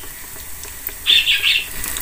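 A stick of patongko dough frying in a shallow pan of hot oil, a steady faint sizzle. About a second in come three short, high chirps in quick succession.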